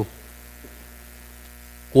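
Steady mains hum from the handheld microphone and sound system, heard plainly in a pause between words.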